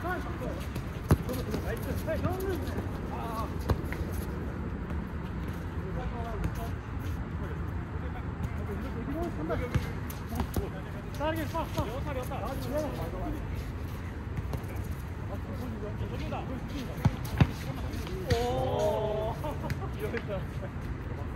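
Futsal game: a futsal ball is kicked with a few sharp thumps, two of them close together near the end, among distant calls from players over a steady background noise.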